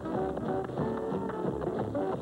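Two tap dancers' shoes tapping out quick rhythms on a hard floor over band music, from an old film soundtrack.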